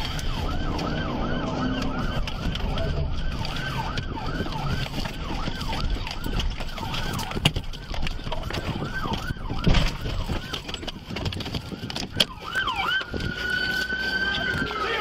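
Police car siren yelping in quick repeated rising sweeps, then switching to a steady held tone near the end. About seven and a half and ten seconds in come sharp knocks, the patrol car ramming the suspect's vehicle to end the chase.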